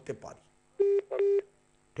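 Two short telephone beeps in quick succession, a steady low tone with a buzzy edge, each about a quarter of a second long, heard over a live phone-in line.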